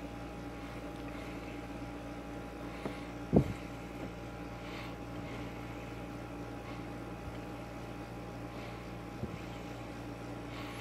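Steady background hum of a small fan or motor, holding one even pitch with a few fixed tones, during hand soldering. A single soft knock about three and a half seconds in and a faint tick near the end.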